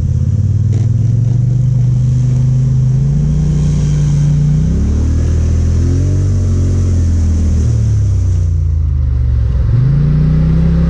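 ATV engine running under way on a muddy trail, its pitch climbing as the throttle opens a few seconds in, then falling off as it slows, with a short dip and pick-up again near the end.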